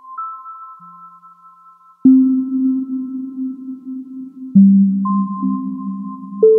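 Teenage Engineering OP-Z synthesizer playing a slow generative ambient sequence: sparse, clear high tones that ring on for seconds, joined by two louder, deeper notes with a slightly grainy texture, about two seconds in and again past four seconds.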